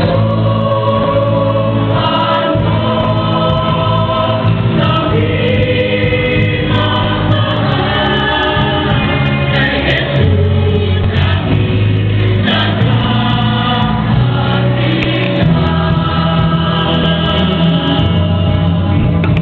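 Youth choir of mixed voices singing a Marian hymn in Tagalog, the sung melody moving above held low accompaniment notes that change every couple of seconds.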